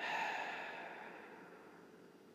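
A long sigh: a breathy exhale that starts suddenly and fades away over about a second and a half.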